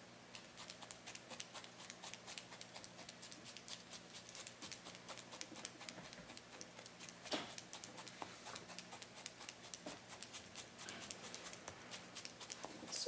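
Felting needle stabbing repeatedly into wool roving, punching through into a burlap-covered work pad: faint, rapid, even pokes, with one louder knock about seven seconds in.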